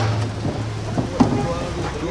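Garbage truck's diesel engine running with a steady low hum under a rushing street noise, with two sharp knocks, the louder just after a second in; faint voices near the end.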